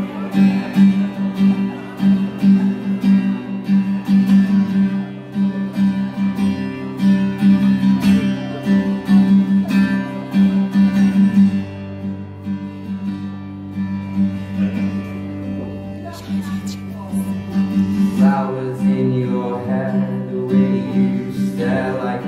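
Acoustic-electric guitar played solo live in a steady, repeating rhythmic pattern, the chords ringing on through the middle. A male voice starts singing over it near the end.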